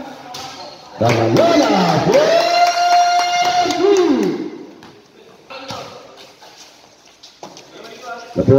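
A loud shouted call from one voice, the pitch gliding and then held on one long drawn-out note for about two seconds before falling away. After it, quieter court noise with a few sharp knocks.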